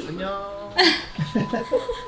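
Speech: a man talking in Korean from the video being watched, mixed with short voice sounds. A thin steady tone comes in about halfway through.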